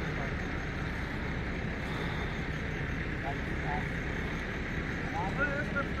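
A steady rumble of background noise, heaviest at the low end, with faint snatches of voices about three seconds in and again near the end.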